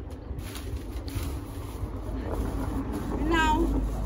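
A dog whining: one short, high call about three seconds in, over a low steady rumble.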